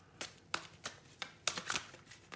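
Tarot cards being handled and shuffled on a table: a run of about six short, sharp card snaps spread over two seconds.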